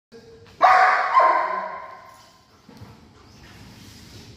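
A dog barks twice, about half a second apart. Each loud bark rings on and dies away slowly in an echoing, metal-walled shed.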